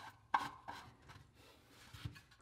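3D-printed plastic funnel lid being fitted into the threaded top of a 3D-printed plastic box: a few light plastic clicks and knocks, the sharpest about a third of a second in.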